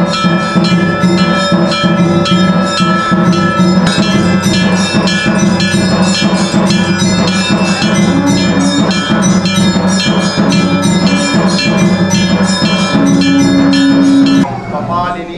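Temple aarti bells clanging rapidly in a steady rhythm, about three strokes a second, over sustained ringing tones.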